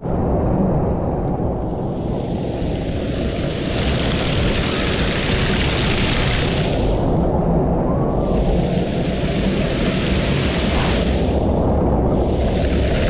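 Water pouring and splashing down from the spouts of a water-play structure, a loud rushing hiss that swells twice as the falling streams come close, over a constant low rumble.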